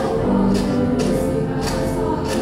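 A large choir of young female voices singing held chords, with a steady rhythm of sharp percussive taps about twice a second.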